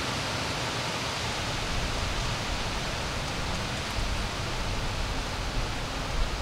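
Steady hiss of storm weather, with a low rumble of distant thunder starting to build near the end, following a lightning flash.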